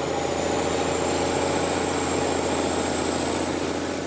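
Engine of heavy logging machinery running steadily, with a faint thin high whine above it.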